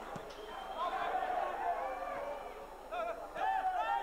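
Live match sound from a football pitch: several distant voices calling and shouting over each other, with a louder burst of calls about three seconds in and again near the end.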